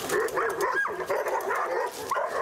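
Several kennelled dogs barking at once in a continuous, overlapping din at a dog being walked past on a leash: the kennel aggression a former trainer describes at the facility.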